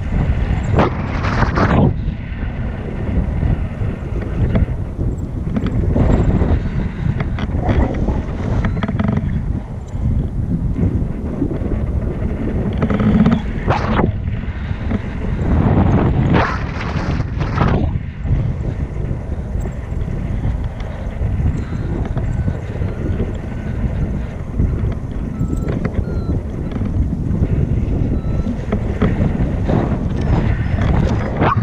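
Wind rushing over the microphone of a selfie-stick camera in tandem paraglider flight: a steady low buffeting, with stronger gusts every so often.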